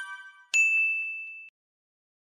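Chime sound effects of a subscribe-button animation. One ringing chime fades out in the first half second; then a second, brighter ding comes about half a second in, rings for about a second and cuts off suddenly.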